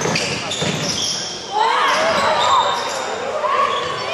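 Basketball dribbled on a hardwood gym floor during play, with players' voices calling out across the large, echoing hall.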